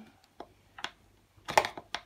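A few light clicks and taps of a T30 Torx screwdriver bit against a stroller's front-wheel axle screw and plastic hub as the bit is seated in the screw head: single clicks, then a quick cluster of them near the end.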